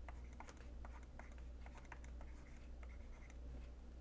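Faint, irregular clicks and taps of a stylus writing numbers on a tablet, over a low steady hum.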